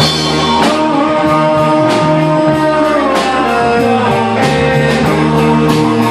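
Live rock band playing: electric guitars and electric bass over a drum kit, with cymbal strikes about twice a second. A held lead line bends downward about halfway through.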